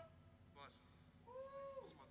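Near silence, with one faint short cry about a second and a half in, held on one pitch and then falling at its end.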